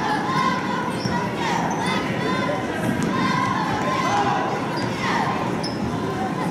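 Basketball being played on a hardwood gym floor: many short sneaker squeaks and a basketball bouncing, over the chatter of a crowd in the bleachers.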